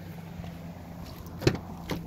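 Rear passenger door of a Jeep Grand Cherokee being unlatched: a sharp click about one and a half seconds in and a second, softer click about half a second later, over a steady low hum.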